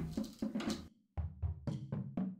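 Metal drum key working the tension rods of a marching tenor drum lug by lug as a new head is tensioned: a quick run of short clicks and knocks, broken twice by abrupt silence.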